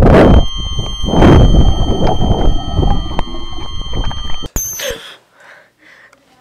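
Loud rushing noise that surges twice, with steady high-pitched ringing tones over it, cutting off suddenly about four and a half seconds in.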